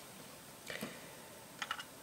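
Faint clicks of plastic LEGO bricks being pressed and handled: a couple of light taps a little under a second in and a few more near the end.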